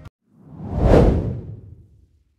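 A whoosh transition sound effect that swells to a peak about a second in and then fades away.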